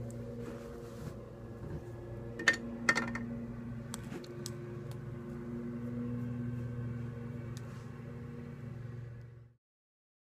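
Faint, steady electrical hum in a small room, with a few light clicks from makeup tools and cases being handled about two and a half and three seconds in. The sound cuts off abruptly near the end.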